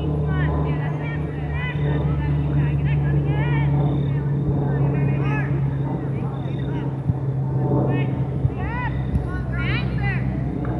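Scattered distant shouts and calls from players and spectators at an outdoor soccer game, short rising-and-falling cries, over a steady low drone.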